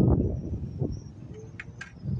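Wind buffeting the microphone: a loud low rumble that dies down after about a second, followed by a quieter rustle with a couple of faint clicks near the end.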